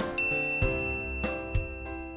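A single bright ding chime sound effect strikes just after the start and rings on, slowly fading, over children's background music with a steady beat.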